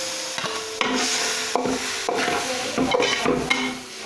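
Metal ladle stirring and scraping fried onions and spices around a steel pot, with repeated ringing clinks of ladle on pot over a steady sizzle as a wet red purée goes into the hot oil.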